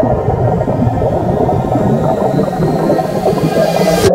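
Muffled underwater noise of bubbles and moving water picked up by a camera held under the surface, with a faint rising whine toward the end; it cuts off suddenly.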